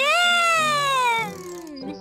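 A cartoon child's voice giving one long wordless "ooh". It swoops up, then slides slowly down in pitch and fades out after about a second and a half.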